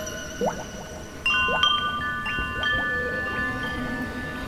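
Ringing chime tones struck several times in quick succession, starting about a second in, each clear tone sustaining and overlapping the others. A short rising squeak comes just before them.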